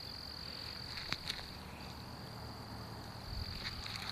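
Insects trilling in one steady, unbroken high-pitched drone, with a single click about a second in.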